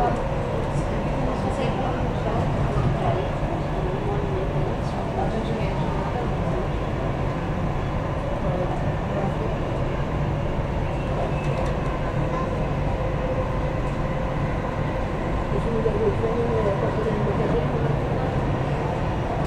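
Dubai Metro train running steadily, heard from inside the carriage as an even rumble, with faint voices of passengers in the background.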